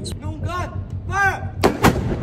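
A ceremonial saluting cannon firing a single shot: one sharp, very loud boom about a second and a half in.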